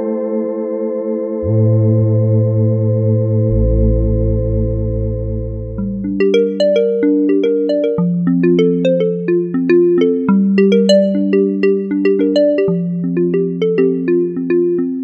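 Yamaha reface DX four-operator FM synthesizer playing a held pad chord on its CloudPad preset, with deep bass notes coming in underneath. About six seconds in it changes to a quick run of short plucked notes over a stepping bass line.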